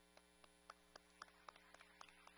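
Faint scattered hand claps from a few people, irregular and growing more frequent toward the end, over a steady electrical mains hum.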